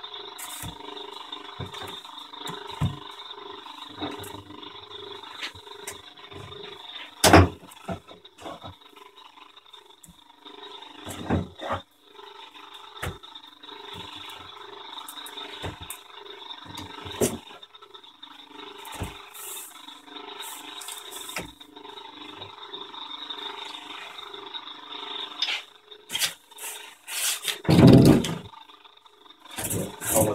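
A compressor used as a vacuum pump runs steadily with a regular pulsing hum, drawing vacuum on a bagged wing mould. Over it come knocks of heavy weight blocks being set down on the mould: a sharp knock about seven seconds in, a few lighter ones, and a heavier thump near the end.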